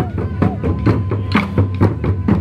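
A group of taiko drums played with sticks in a driving rhythm, several strikes a second, with sharper clicks of stick on wood among the deep drum beats.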